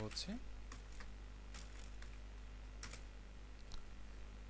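Computer keyboard typing: a handful of scattered, separate keystrokes.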